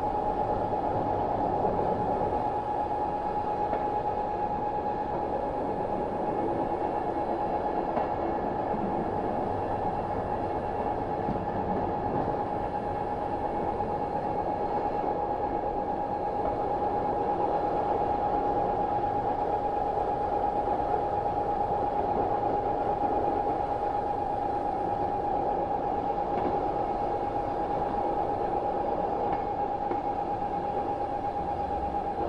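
Diesel train running steadily along the track: an even rumble with a constant high whine held at one pitch throughout.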